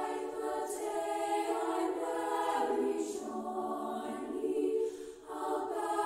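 Women's choir singing in three-part treble harmony (SSA), holding sustained chords. There is a brief break about five seconds in, as for a breath between phrases.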